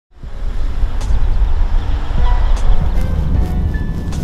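Steady low rumble inside a police patrol car's cabin as it drives, with music under it.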